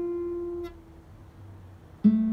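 Yamaha G-280A nylon-string classical guitar: a single plucked note rings on and is stopped about two-thirds of a second in, leaving a pause before the next note.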